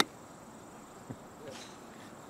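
A single crisp click of a golf club striking the ball on a full approach swing from the fairway, right at the start. After it comes a faint, steady, high-pitched insect drone.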